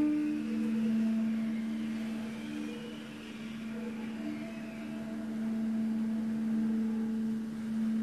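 Free-jazz duet of two saxophones: one holds a long, steady low note while softer, broken notes come and go above it. The playing eases to its quietest about three seconds in and swells again near the end.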